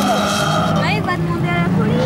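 Rally-car engines running hard and shifting in pitch as the cars race round a dirt autocross track, with people's voices mixed in.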